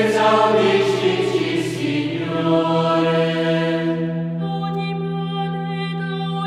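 Background music: choral chant with long held notes, in the style of a sung religious litany. A noisy swell rises over it in the first two seconds.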